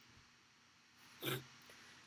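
Near silence with one short, quick breath through the nose about a second in, just before he speaks again.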